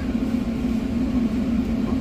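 Steady low machine hum with a deeper rumble beneath, even throughout.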